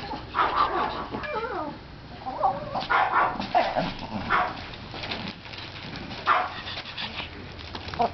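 Small dogs giving a string of short yips and whines, some with a wavering pitch, thinning out after about four and a half seconds with one more near the end.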